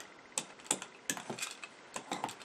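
A string of light, irregular plastic clicks and taps from a small hand roller being worked over wet gesso on a canvas.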